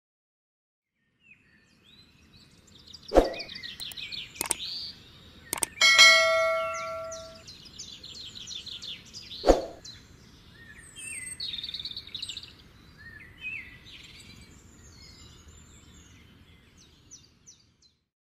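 Small birds chirping and twittering in quick runs, starting about a second in. A few sharp knocks cut across the birdsong, and a single bell-like ding about six seconds in rings on for over a second.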